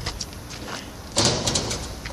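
Handling noise on a phone microphone: a few faint clicks, then a short scraping rustle a little over a second in as the phone moves close to the dog.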